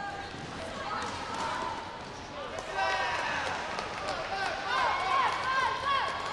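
Sports hall background: indistinct voices mixed with short high-pitched squeaks, getting busier and louder about halfway through.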